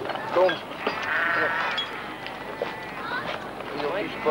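A sheep bleating once, a single call lasting under a second about a second in, amid people's voices.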